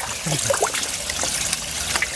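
Water splashing and trickling in an aquaponic fish tank as jade perch rise to take floating feed pellets at the surface, with several short splashes over a steady trickle.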